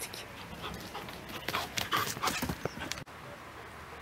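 A dog breathing hard close by in short, irregular puffs, cut off suddenly about three seconds in.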